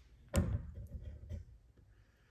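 A sharp knock about a third of a second in, followed by a few softer thumps and small knocks, then quiet: handling noise.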